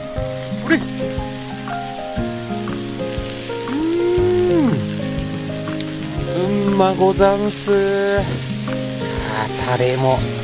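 Meat sizzling on a ridged cast-iron jingisukan (Genghis Khan) grill heated by a portable gas burner: a steady frying hiss. Background music of held, changing notes plays over it.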